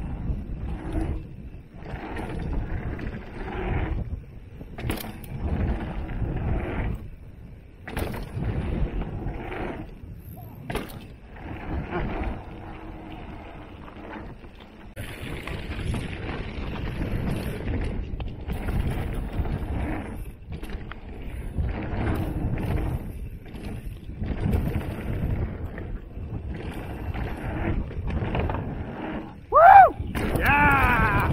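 Mountain bike rolling fast down a dirt trail: knobby tyres on packed dirt and gravel, with wind on the microphone and the bike rattling over bumps, the noise surging and dropping with the terrain. Right at the end a rider lets out a short rising whoop.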